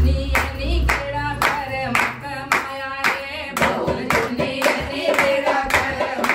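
A group of women singing a Punjabi devotional bhajan together, keeping time with steady hand clapping about twice a second. Low drum beats from a dholak sound near the start.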